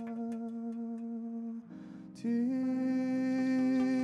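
A voice humming long, steady held notes. The first note breaks off about a second and a half in, and after a short gap a slightly higher note is taken up and held.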